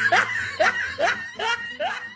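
A person laughing in a run of short, rising-pitched bursts, about three a second, getting quieter toward the end.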